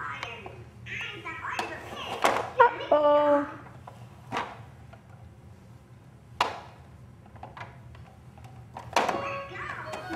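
Sharp knocks of hard plastic as a toddler handles and bumps a plastic activity walker toy. Several separate knocks come spread out, one about six seconds in and another near the end. A brief stretch of voice-like sound comes in the first few seconds.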